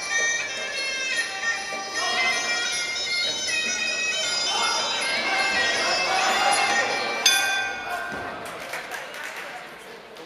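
Muay Thai sarama music: a reedy pi java oboe playing a stepping melody over small ching cymbals. A sharp knock comes about seven seconds in, and the music then fades down.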